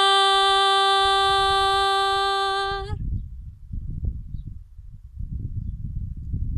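A woman singing unaccompanied, holding one long steady note that ends about three seconds in. After that, wind rumbles and buffets on the microphone.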